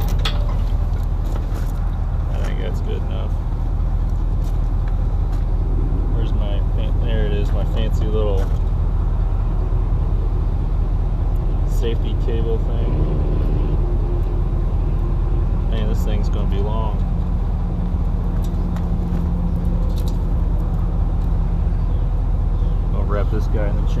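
Diesel pickup truck engine idling steadily, with trailer safety chains clicking and clinking now and then as they are crossed and hooked up at the hitch.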